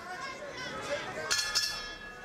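Boxing ring bell struck a couple of times near the end, ringing on, signalling the start of the round, over the arena crowd's murmur.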